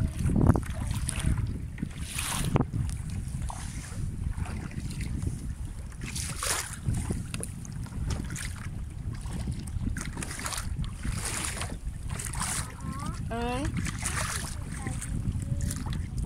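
Wind buffeting the microphone on a paddled kayak, with intermittent splashes of water from the paddle strokes.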